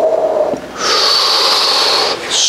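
A person's wordless sounds close to the microphone. A drawn-out, slightly falling 'ooh' ends about half a second in. From about a second in comes a long, loud, breathy 'whew' of an exhale.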